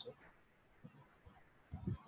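Pause in a man's narration: faint room tone with a few soft low sounds, and a short low vocal sound just before the end.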